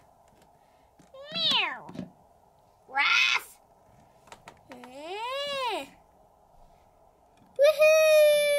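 A person's voice imitating a cat: three meows, the first falling in pitch and the last a long one that rises and falls.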